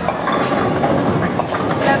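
Bowling ball rolling down the lane with a steady rumble, with a few short clattering knocks, the sharpest just at the start.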